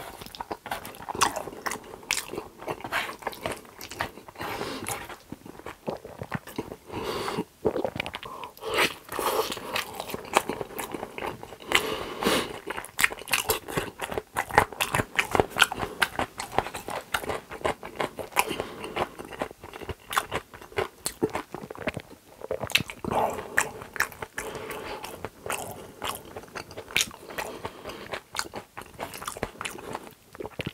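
Close-miked mouth sounds of a person chewing shrimp rose pasta: a dense, irregular run of quick clicks and smacks that carries on without a break.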